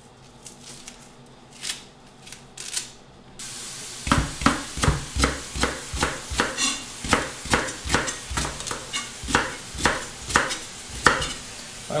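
A few light clicks as a leek is handled and trimmed. About four seconds in, a chef's knife starts chopping the leek on a plastic cutting board, about three even strokes a second.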